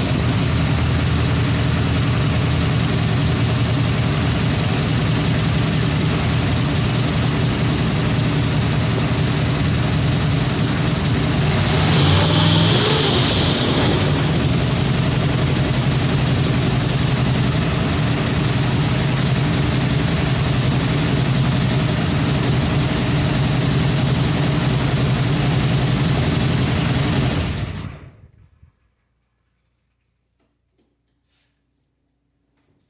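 Carbureted 350 small-block Chevy V8 running steadily, briefly revved about twelve seconds in, then shut off near the end. It sounds in need of some tuning.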